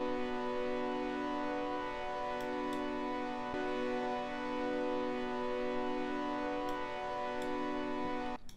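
Synthesizer pad holding one sustained chord, steady throughout, with a few faint high ticks.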